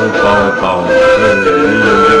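Music with singing: long held notes that step up and down in pitch.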